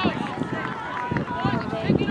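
Several people shouting at once during a soccer game, overlapping calls with rising and falling pitch, too distant and jumbled for words to be made out.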